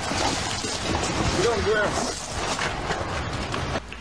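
Police takedown of a man on the ground, heard as a rough, noisy scuffle with a few short, indistinct shouted voices in the middle.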